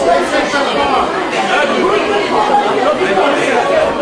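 A crowd of people all talking at once, a steady hubbub of overlapping voices.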